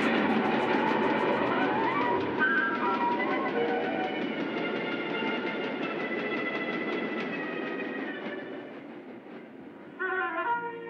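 Cartoon sound effect of a train rushing past: a rhythmic clatter of wheels over a dense rumble, with several held pitched tones above it, fading away near the end.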